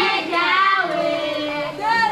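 A voice singing, with long held notes that slide in pitch.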